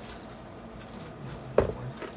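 Light handling clatter of bagged jewelry and plastic in a plastic storage bin: faint scattered clicks, with one sharper knock about one and a half seconds in.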